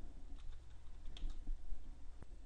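A few scattered keystrokes on a computer keyboard, faint over a low steady hum.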